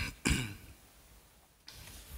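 A man clearing his throat: two short, rough rasps about a quarter second apart at the very start, the second louder.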